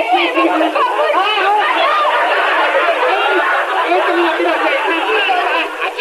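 Several voices talking over one another in a jumble of chatter, with a thin sound that has no bass.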